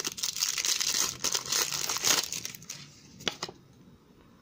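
Foil wrapper of a Topps Match Attax trading-card packet being torn open and crinkled in the hands: a crackly rustle for about two seconds that then dies away.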